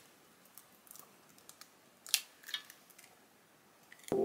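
A raw egg cracked against the edge of a white dish: a sharp crack a little after two seconds in, then fainter crackles of the shell being pulled open as the egg drops in. Small handling clicks come before it.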